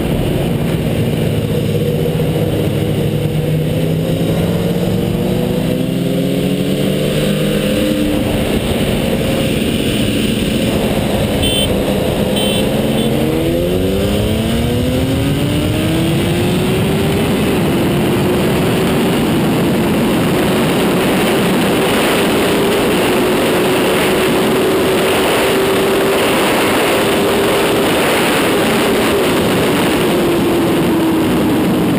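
Inline-four engine of a 2004 Honda CBR1000RR Fireblade at full throttle, its pitch climbing in several sweeps through the first half and steeply about 13 seconds in. After that it climbs slowly and steadily as the bike passes 250 km/h, under heavy wind rush on the camera.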